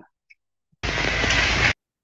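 A burst of steady rushing noise, about a second long, that starts and stops abruptly.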